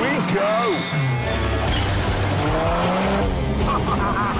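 A car engine revving hard, mixed with a man's excited shouting and laughter in the first second and music underneath.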